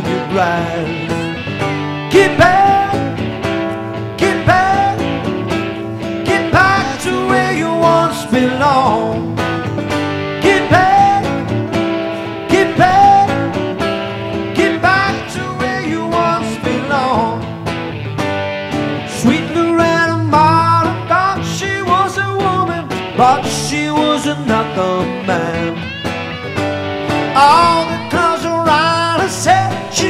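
Live acoustic band performance: a man sings lead over strummed acoustic guitar, backed by electric guitar and conga drums.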